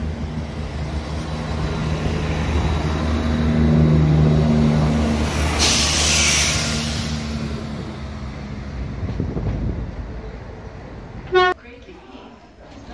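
Diesel multiple-unit train running past at close range, its engine note steady with a slight rise around four seconds in. A burst of hissing air comes about halfway, then the rumble fades, and a short loud sound comes near the end.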